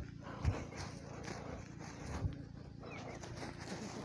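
Gloved hand scratching and crumbling dry clay soil around a young watermelon plant, faint, over a steady low hum. Two brief low sounds come about half a second in and just past two seconds.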